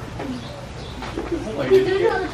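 Indistinct voices, short wordless exclamations that grow louder in the second half.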